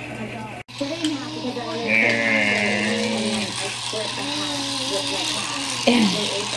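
Indistinct talking, with a small motor buzzing briefly about two seconds in, likely a battery-powered toy race car being handled.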